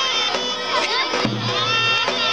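Traditional Turkish Aegean folk dance music, a wind-instrument melody over drum strokes, mixed with children in the crowd shouting and cheering.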